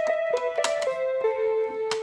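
B.Toys Meowsic toy cat keyboard playing a few electronic piano notes as its keys are pressed. The notes are held and step down in pitch, with a short click about halfway through and another near the end. This is a little tune being recorded with the toy's Record function for playback.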